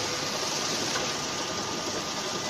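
Steady running hum and hiss of an automatic case-packing machine, with no knocks, while its gripper lowers a row of bags into a carton.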